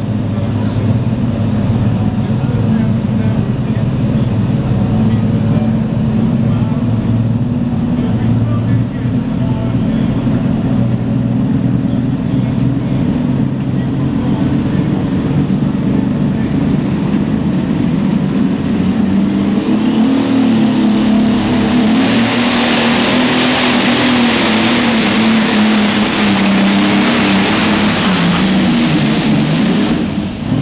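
Modified pulling tractor's engine running steadily at the start line. About twenty seconds in, a whine climbs quickly to a high, steady pitch and the engine noise grows much louder as the tractor goes to full power and pulls the weight sled.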